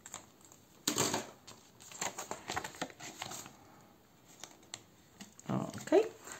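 Crinkling and rustling of a clear plastic binder envelope and paper savings card being handled, in several bursts with small clicks, loudest about a second in.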